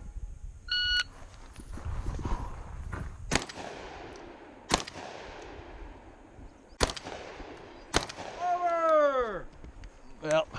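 A shot timer beeps once about a second in, starting the string; then a shotgun fires four shots at steel targets, spaced unevenly over the next five seconds. Near the end comes a drawn-out sound falling in pitch.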